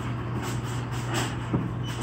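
Claw machine's mechanism running as the claw is lowered onto the plush toys: a steady hum with a single click about one and a half seconds in.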